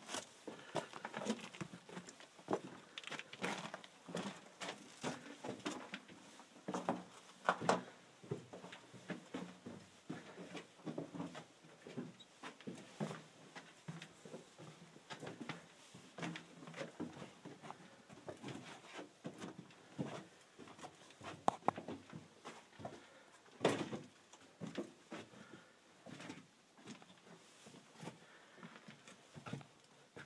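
Footsteps of two people crunching and scuffing over the loose rock and gravel floor of a narrow mine tunnel, an irregular run of steps and small knocks with a few louder ones around eight seconds and again after twenty seconds in.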